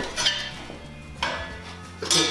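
Perforated metal cable tray clattering as it is lifted and handled, with two sharp metallic knocks, one just after the start and one about a second later.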